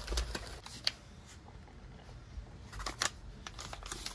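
Handling of a white plastic packaging bag: a few light clicks and rustles as it is picked up and moved on a tabletop, with a small cluster of taps about three seconds in.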